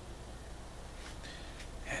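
Quiet room tone with a low steady hum, a faint intake of breath about a second in, and the start of a man's speech right at the end.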